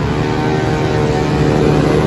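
Several motorcycle engines running hard together, a dense steady drone that grows louder as the bikes approach.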